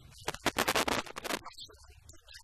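Scratchy rustling noise in a quick run of short bursts lasting about a second.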